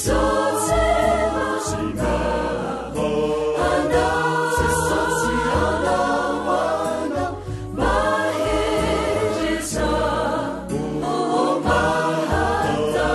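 Choir singing a Christian song over instrumental backing with a steady bass line.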